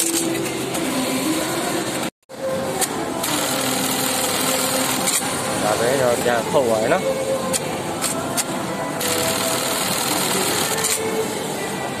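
Juki LK-1900ANSS computer-controlled bartacking machine running a bartack cycle, with several sharp clicks from its mechanism over steady workshop noise and voices.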